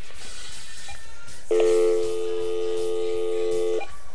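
A telephone handset sounding a steady electronic tone of several pitches at once for a little over two seconds, starting about a second and a half in. It marks the call being switched over to go on the air.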